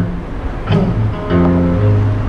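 Live music playing, with long held low notes.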